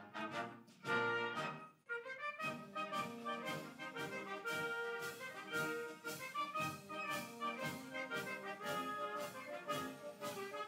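Brass band playing processional music for the arrival of an official party, with sustained chords; the sound drops out briefly about two seconds in, then the music carries on.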